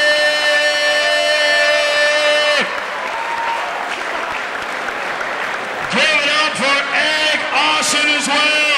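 A man's voice holding one long drawn-out shout on a steady pitch, which breaks off about two and a half seconds in. Crowd applause follows, and a man starts talking near the end.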